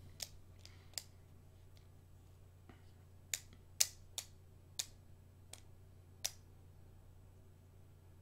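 A series of about ten sharp, irregular clicks over a faint steady low hum, stopping a little after six seconds in.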